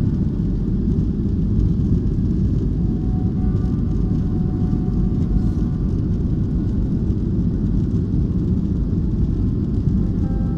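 Steady low rumble of jet engines and airflow heard inside an airliner cabin during the climb after takeoff, with faint music underneath.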